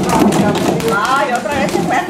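Several rubber playground balls thudding and bouncing on the floor and knocking against plastic buckets, the knocks densest in the first half-second, with people talking and laughing over them.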